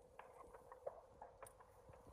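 Near silence: faint outdoor background with a few scattered small clicks and a faint steady tone.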